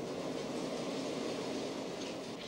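Steady low rumble of a subway train in an underground station.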